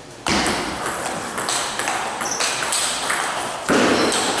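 Table tennis ball clicking off rackets and the table in a serve and rally, a run of short sharp ticks, with a louder burst a little before the end.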